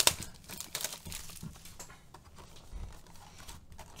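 Clear plastic shrink wrap crinkling as it is pulled off a trading-card box, with a few light taps and rubs of the cardboard box being handled.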